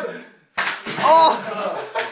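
A plate of chocolate cake smacked into a man's face: a sudden smack about half a second in, right after a brief hush, followed by a voice.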